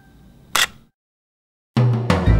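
Camera-shutter sound effect in a logo sting: a ringing tone fades out and a single shutter click sounds about half a second in. After a short silence, music with a deep bass comes in near the end.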